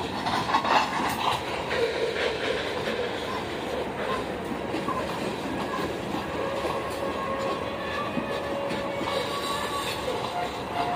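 Freight train cars rolling through a grade crossing, with wheels clacking over the rail joints and steel wheels squealing faintly on and off. The sound is loudest about a second in.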